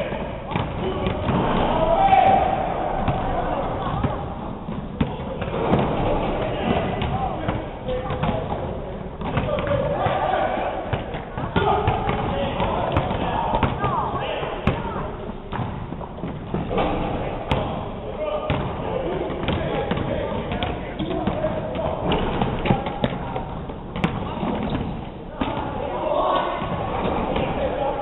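Basketballs bouncing on a hardwood gym floor, with indistinct chatter from several players, all echoing through a large gym hall.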